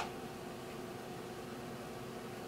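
Instron universal testing machine running with a steady hum and a faint constant tone as it slowly loads a reinforced concrete beam in quasi-static bending. A single brief click comes at the very start.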